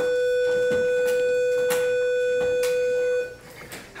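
Electronic school bell: one steady, buzzy tone held without change, cutting off about three seconds in. It signals the end of class.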